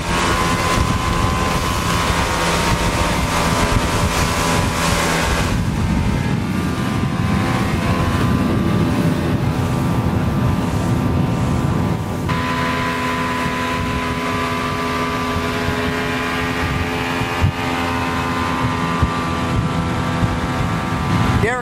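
2002 Sea-Doo Islandia deck boat under way at speed: its Mercury 240 hp V6 engine and jet drive running hard, mixed with water rush and wind on the microphone. The engine note and the rushing noise shift about five seconds in and again about twelve seconds in.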